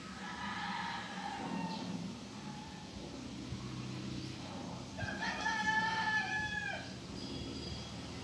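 Rooster crowing twice: a fainter crow near the start and a louder, longer one of almost two seconds about five seconds in, dropping in pitch at the end.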